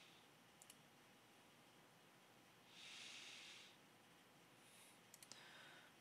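Near silence: faint room tone, with a soft breath lasting under a second about three seconds in and a few faint computer mouse clicks.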